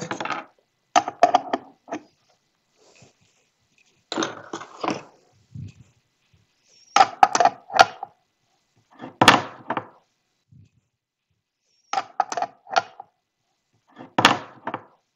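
Hand tools clicking and knocking against metal compression fittings on a wooden mounting board while a fitting is tightened. The sound comes in about five short bursts of a few sharp clicks each, a couple of seconds apart, with one low thud in the middle.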